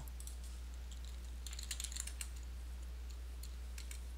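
Faint keystrokes on a computer keyboard typing a short command: a few clicks near the start, a quick run of them about a second and a half in, and one more near the end, over a steady low hum.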